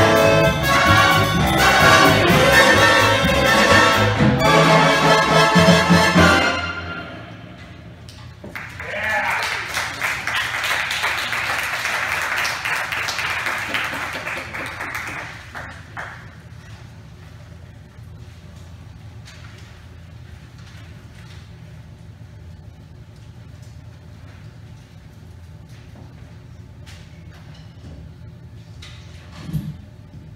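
Jazz big band of saxophones, trumpets and trombones with rhythm section playing the final bars of a piece at full volume, closing on low held notes about six seconds in. The audience then applauds for several seconds, fading out by about the middle, followed by quiet room sound with a few faint knocks.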